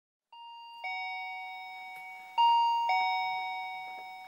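Video door entry intercom chiming twice: each time an electronic ding-dong, a higher note then a lower one that rings on, with the second ding-dong about two seconds after the first and louder.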